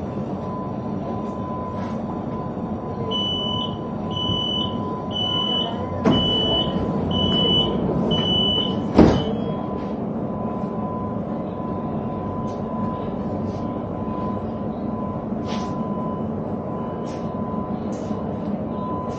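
Door-closing warning on a commuter electric train: about seven high beeps at a steady pace over some six seconds, then the sliding doors shut with a loud thud about nine seconds in. Under it, the stationary train's steady equipment hum with a thin constant whine.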